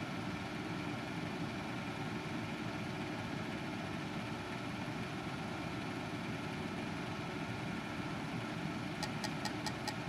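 Steady background hum with faint steady tones running through it, and a quick run of faint ticks in the last second.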